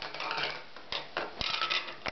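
A toddler clattering a spoon against a bowl: an irregular run of quick clicks and scrapes, busiest in the second half.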